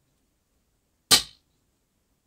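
A spring-loaded desoldering pump (solder sucker) firing once about a second in: a single sharp, loud snap of the plunger as it sucks molten solder off a joint.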